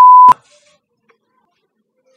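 Censor bleep: one loud, steady, single-pitch beep lasting about a third of a second, laid over a spoken contact name and ending in a click.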